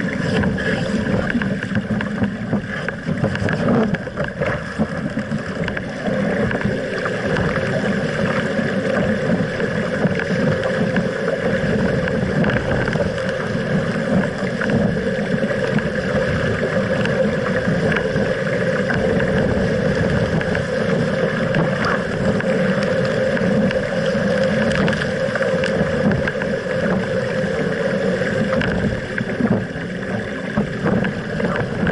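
Steady wind noise on a deck-mounted camera's microphone, mixed with water rushing and splashing along the hull of an RS Aero sailing dinghy sailing in a 15 to 17 knot breeze.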